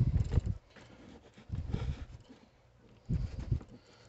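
Hands handling eggs in a plastic egg tray inside a styrofoam cooler: three short bouts of low knocks and rubbing, about a second and a half apart.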